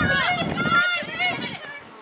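High-pitched shouted calls from voices on a soccer field, strongest in the first second and dying away by about halfway through, leaving faint outdoor ambience.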